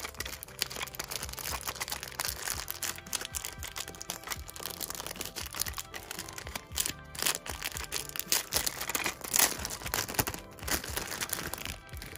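Clear plastic wrapper crinkling in irregular bursts as it is peeled off a small toy case, over quiet background music.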